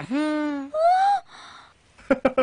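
Wordless comic vocal exclamations: a drawn-out "ooh" that dips and then holds, then a higher whoop that rises and falls, then a short breathy exhale.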